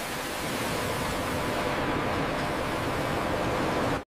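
Spray nozzles jetting water down onto crushed glass cullet as it is washed: a steady hiss of spraying and splashing water.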